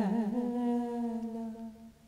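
A woman singing unaccompanied, holding one long note at the end of a phrase. The note wavers at first, then steadies and fades away a little before the end.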